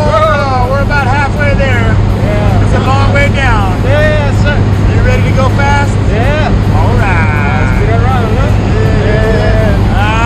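Steady low drone of a jump plane's engine heard inside the cabin, with people's voices talking and calling out over it.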